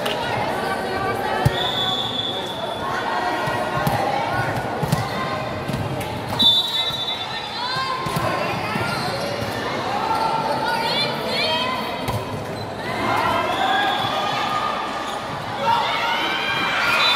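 A volleyball thudding on a gym floor and being struck, a handful of sharp knocks, the loudest about six seconds in, under continuous shouting and calling from players and spectators in a large hall.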